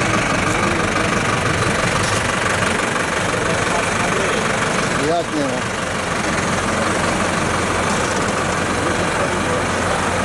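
An engine running steadily, with a brief voice about five seconds in.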